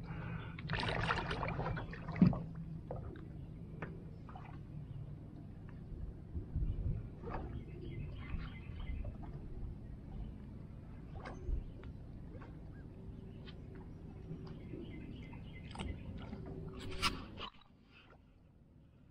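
Lake water sloshing and lapping around a swimmer over a steady low hum, with scattered small knocks and splashes. There is a burst of splashing about a second in and a sharp knock just after two seconds. The sound drops away suddenly just before the end.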